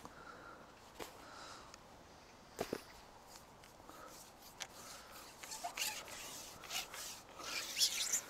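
A few light clicks and knocks from a carbon fishing pole being handled and shipped out. The loudest is a double knock a little under three seconds in, and the clicks come more often near the end.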